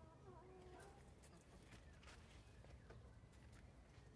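Near silence, with a short, faint animal call in the first second and a few faint clicks.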